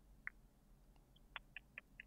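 Near silence, broken by five or so faint, very short high-pitched blips spread across the pause.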